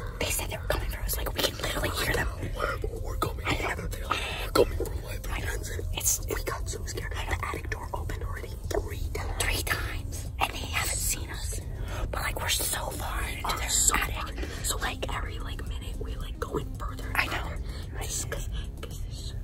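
People whispering in hushed voices, on and off throughout, over a steady low rumble.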